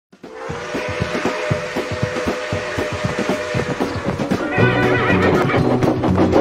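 An intro soundtrack: a held two-note tone over a regular knocking about four times a second, then music with a repeating bass line comes in about four and a half seconds in.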